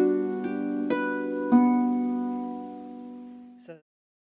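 Double-strung harp, a few notes plucked one after another in the G-against-B pattern, with the two hands a third apart. The notes ring on and slowly fade, then the sound cuts off suddenly near the end.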